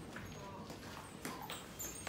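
Light, hollow clicking knocks, about two a second and more regular in the second half, over faint room noise.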